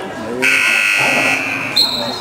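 Sports-hall scoreboard buzzer sounding once, a steady electronic tone lasting about a second and a quarter, followed near the end by a short, higher-pitched tone.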